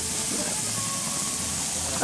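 Ahi tuna and marlin steaks sizzling on a barbecue grill: a steady hiss.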